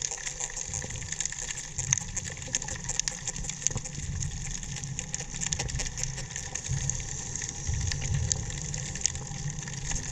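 Underwater sound heard through a camera housing: a steady crackle of many short clicks over a low, uneven rumble of moving water.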